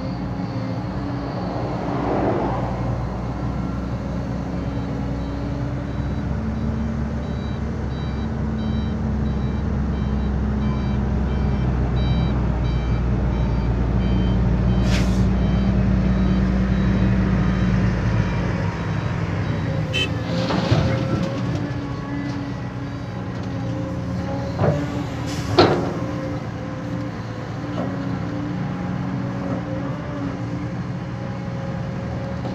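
Diesel engines of a CAT hydraulic excavator and a dump truck running as the truck reverses into place, its reversing alarm beeping steadily for several seconds over a heavier engine rumble. In the second half come a few sharp hisses of released air from the truck's air brakes, the last one the loudest.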